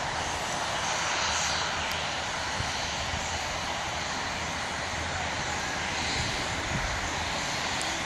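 Steady rushing noise of wind buffeting the microphone while skiing downhill, with skis sliding over snow.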